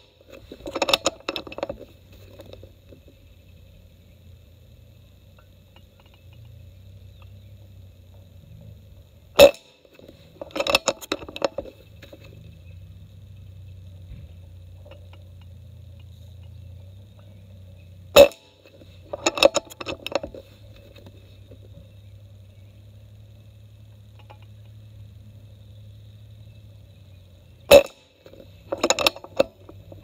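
Umarex Gauntlet PCP air rifle firing three shots about nine seconds apart, each a sharp crack. About a second after each shot comes a short run of clicks as the bolt is cycled to load the next pellet.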